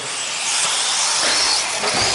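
Electric 4wd RC buggies racing on an indoor dirt track: a steady hiss of motors, drivetrains and tyres with faint high whines.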